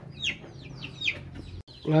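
Chicks peeping: about six short, high peeps, each falling in pitch. They break off abruptly shortly before the end.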